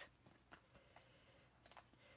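Near silence, with two faint short clicks, one about half a second in and one near the end, from a sheet of adhesive foam dimensionals being handled.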